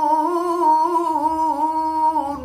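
A man's voice reciting the Quran in the melodic tilawah style, holding one long, ornamented note whose pitch wavers gently up and down.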